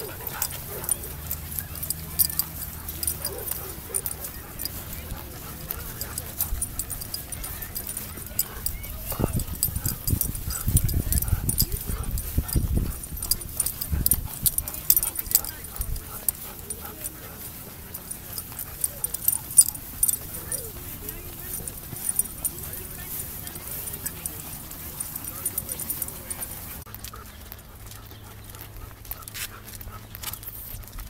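Dogs whimpering now and then, with an occasional bark, over walking footsteps and frequent clicks of a handheld phone. A low rumble on the microphone comes about nine seconds in and lasts a few seconds.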